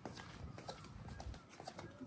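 Footsteps of sandals on stone paving at a walking pace: a series of light, irregular clicks over faint outdoor background.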